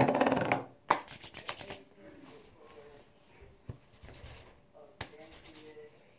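Hands rubbing and scrunching through curly hair close to the microphone: short, crackly rustling bursts, the loudest right at the start, another about a second in and a last one about five seconds in, with quieter handling between.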